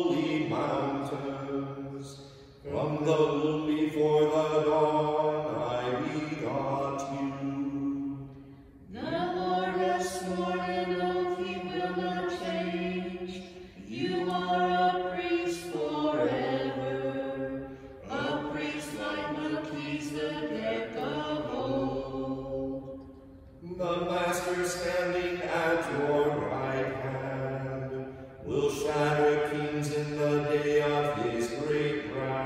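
Liturgical chant of Vespers: sung phrases of a few seconds each on sustained pitches, separated by short breaks for breath.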